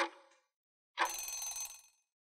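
Quiz countdown-timer sound effect: a last clock tick, then about a second in a short ringing alarm bell of just under a second that signals time is up.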